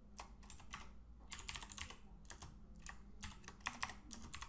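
Typing on a computer keyboard: faint, irregular runs of keystrokes with short pauses between them, as a word of code is deleted and retyped.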